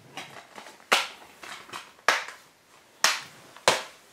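Plastic Blu-ray cases clacking as they are handled, snapped shut and set down on a stack. There are four sharp clacks, about a second apart, with softer plastic rattles between them.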